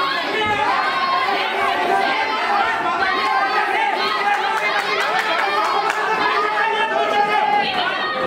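Crowd of spectators around a boxing ring, many voices talking and calling out at once, overlapping into one continuous babble.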